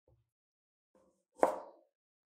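A single chop about one and a half seconds in: a cleaver cutting through a lime and striking a plastic cutting board. Faint handling sounds come just before it.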